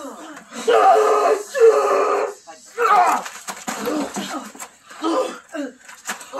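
Several people crying out and grunting with strain in a staged brawl: a run of drawn-out, wordless yells about half a second to a second each, with a few faint knocks between them.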